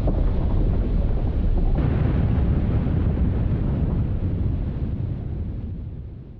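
Deep, steady rumbling noise from a produced audio soundscape, fading out over the last couple of seconds.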